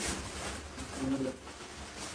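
Faint, muffled low voice sounds, like a stifled laugh behind a hand, over a steady hiss.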